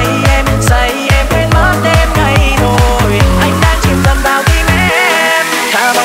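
Electronic dance music remix with a steady, fast bass beat. About five seconds in the bass drops out and a rising synth sweep builds toward the next section.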